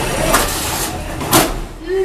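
Two sharp knocks about a second apart, the second louder, as small combat robots strike each other in the arena, over steady noise from the room and crowd.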